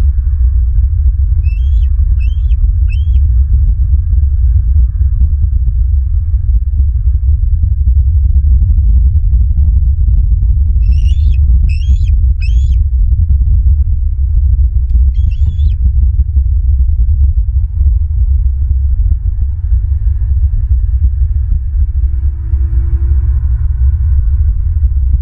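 A loud, steady low rumble, with a bird calling over it: three short high hooked calls about a second and a half in, three more about eleven seconds in, and a single call at about fifteen seconds.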